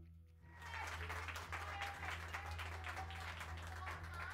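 Audience applause that starts about half a second in and carries on steadily, with music playing faintly underneath.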